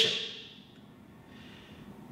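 A quiet pause in a man's talk: low room tone, with a faint intake of breath near the end.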